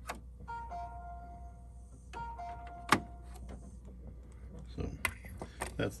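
HP OfficeJet Pro 8025 printer mechanism whirring in two short spells with a steady whine, the printer responding once its paper-tray sensor lever is pressed in. A sharp click comes near the middle, and a few lighter clicks come near the end.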